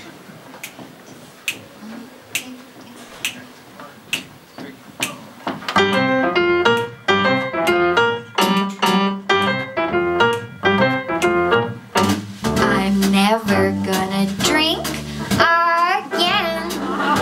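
Soft clicks at an even pace, about one a second. About six seconds in, a live jazz piano starts an intro of chords, and an upright bass joins in low underneath around twelve seconds.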